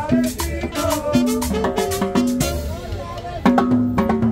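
Live Latin dance band playing an upbeat tropical number, with drum kit and congas keeping a steady beat under bass and melody.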